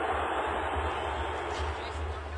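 Outdoor soccer-field ambience: a faint, steady wash of distant voices over low wind rumble on the camera microphone, slowly fading.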